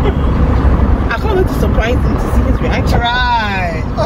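Steady low road-and-engine rumble inside a moving car's cabin, with laughing voices over it and one long cry that falls in pitch near the end.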